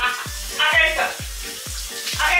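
Music with a deep bass drum beat, each thud sweeping down in pitch, about two to three beats a second, with a voice briefly over it near the middle.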